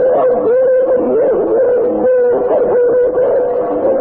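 Voices wailing in lament on an old, dull-sounding tape recording: a held, wavering cry with several voices overlapping.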